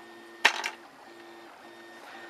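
Homemade RepRap Prusa 3D printer's stepper motors humming in short runs, stopping and restarting as the print head moves during a print. A brief sharp sound about half a second in is the loudest thing.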